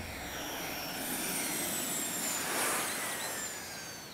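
A whooshing rush of noise with thin, slowly falling high tones, swelling a little before three seconds in and fading toward the end: a cartoon sound effect of a vehicle speeding along.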